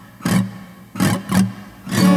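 Acoustic guitar strummed in single, separate chord strokes, four in two seconds, each left to ring briefly. Right at the end it goes into continuous strumming.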